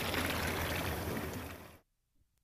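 Steady rushing water noise that fades away and cuts to silence near the end.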